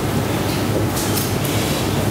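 Steady rushing noise with a low rumble, the background noise of a lecture-hall recording, with a brief light rustle about a second in.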